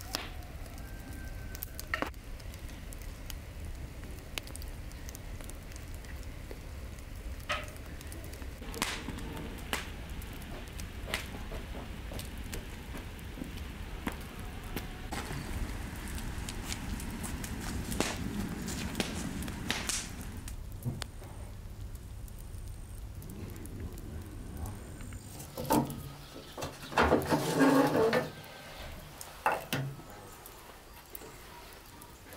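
Wood fire crackling under a large pan, with scattered sharp pops and snaps. Around the middle comes a soft sloshing as a ladle stirs kiwis in water in a metal basin, and a few seconds before the end a burst of loud clattering knocks.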